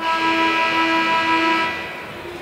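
A loud steady tone made of several pitches at once, held for nearly two seconds and then stopping.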